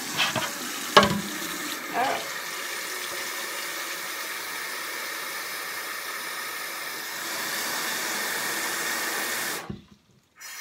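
Bathroom sink faucet running, filling a glass bowl in the basin: a steady rush of water that gets louder about seven seconds in and cuts off suddenly just before the end. A few sharp knocks in the first two seconds, the loudest about a second in.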